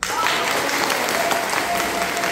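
Audience applause, starting suddenly and continuing steadily at full strength.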